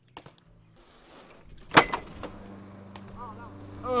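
A BMX bike hitting the wooden grind box once, a single sharp knock about two seconds in, after a few light clicks. Afterwards a lawn mower engine hums steadily in the background.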